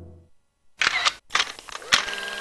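A gong's ring dying away, then after a brief silence a few short, sharp, crackling sounds in quick succession about a second in.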